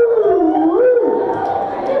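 A person's voice howling through the PA in a long wavering cry that dips and rises in pitch.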